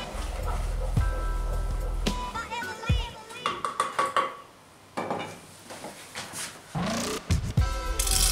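Background music, with a spoon clicking and scraping against an enamel saucepan as hot caramel is stirred, and a run of light knocks near the end as the pot is handled.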